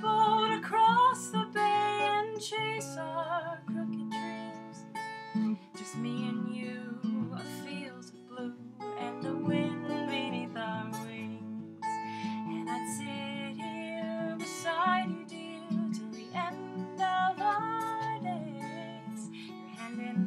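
Acoustic guitar strummed and picked in an instrumental passage between sung verses.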